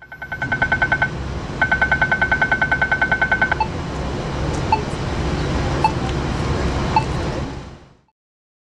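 City street traffic noise with an electronic beeper over it. A fast run of high beeps, about eight a second, comes in two stretches through the first half. After that, single short beeps come about once a second.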